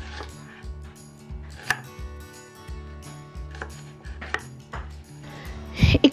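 Kitchen knife chopping red onion on a wooden cutting board: short, irregular knocks of the blade on the board, over faint background music.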